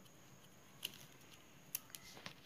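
Plastic craft-wire strips being pulled and knotted by hand: faint rustling with two sharp clicks, one near the middle and one near the end.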